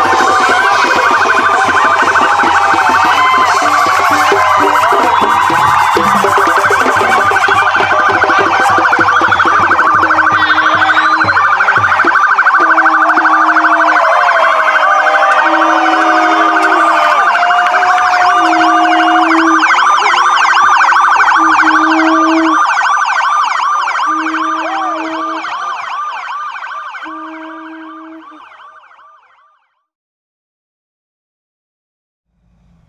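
Police sirens wailing and yelping, mixed with music that has a repeating low note; the sound fades out near the end.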